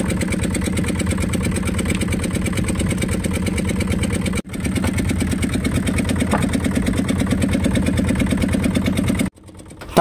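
Fishing boat's engine running steadily with an even, fast chug. It breaks off sharply for a moment about four and a half seconds in, and again near the end.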